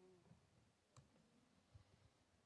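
Near silence with a single faint click about a second in: a key press on a laptop keyboard as a router command is entered.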